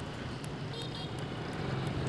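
Street traffic of motorbikes and scooters: a steady low engine hum under road noise, growing a little louder toward the end.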